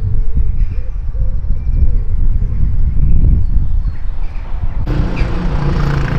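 Wind rumbling on the microphone, loud and gusty, with faint bird calls behind it. About five seconds in, the sound changes abruptly to a steadier hum with more hiss.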